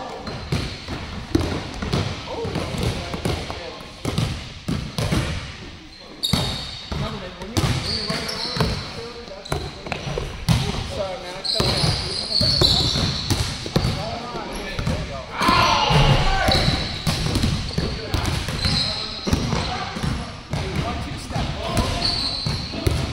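Several basketballs bouncing irregularly on a hardwood gym floor, mixed with children's voices.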